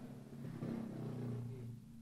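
Faint guitar chord ringing on and dying away, fading out near the end.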